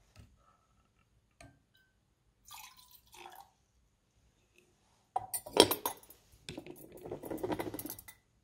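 Water poured from a glass measuring cylinder into a copper calorimeter can. Light glass clinks and knocks from handling the cylinder come first; the pouring itself is the louder, longer noise in the second half.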